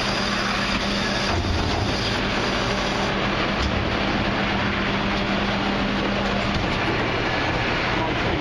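Refuse truck running with its hydraulics working as a Terberg bin lifter tips a wheelie bin over the rear hopper and lowers it, with a couple of low clunks in the first half. A steady hum runs under the noise and stops about six and a half seconds in.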